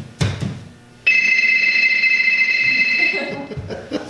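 A phone ringing sound effect: a thump, then about a second in a steady high two-tone ring that lasts a little over two seconds and stops.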